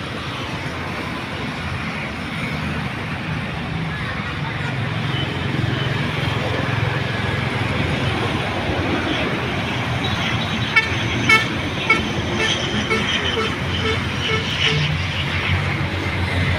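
Steady road traffic noise that swells gradually, with several short vehicle-horn toots a little past the middle.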